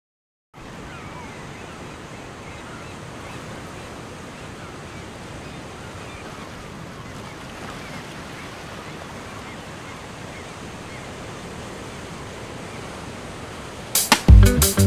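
Steady rushing ambience of surf, with many faint high chirping bird calls over it, starting about half a second in.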